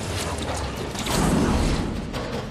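Film soundtrack of a tank moving: metallic creaking and clanking of the tracks over a low rumble, growing louder about a second in.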